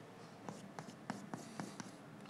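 Chalk writing on a blackboard: a run of faint, short taps and scrapes as symbols are written, starting about half a second in.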